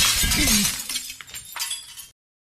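FPV quadcopter crash heard through its onboard GoPro: a loud noisy clatter as it tumbles across the ground, dying away within about a second while a falling whine sounds as the motors spin down, then a few faint knocks.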